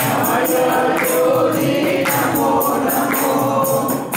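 A group of voices singing a Hindu devotional bhajan, with jingling hand percussion keeping a steady beat.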